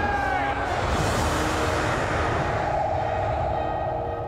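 Dramatic orchestral film score laid under a science-fiction spaceship sound effect: a low rumble and a rushing noise that swell in the first two seconds. A held, wavering note enters about three seconds in.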